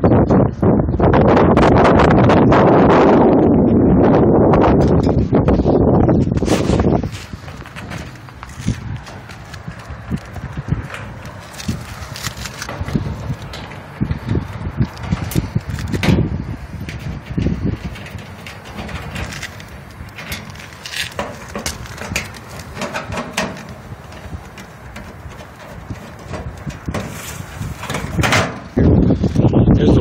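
Loud steady noise for about the first seven seconds, then scattered clicks and knocks of hand tools on the sheet-metal condenser cabinet and fan hardware while the unit is put back together.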